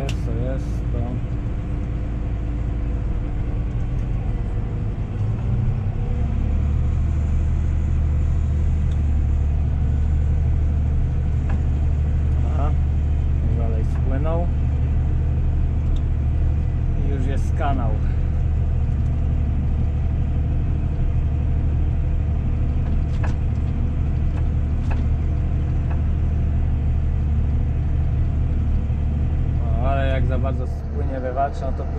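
Tractor engine heard from inside the cab, working hard while pushing a front-mounted spiked roller to compact a silage clamp. The drone drops in pitch and grows louder about six seconds in, then holds steady.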